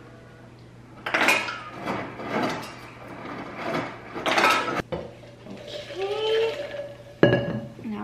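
Refrigerator door ice dispenser dropping ice cubes into an insulated tumbler, a clattering run of bursts lasting about four seconds. A single sharp knock comes near the end.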